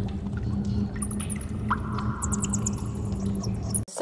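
Cave ambience sound effect: a steady low rumble and hum with scattered echoing drips, cut off abruptly near the end.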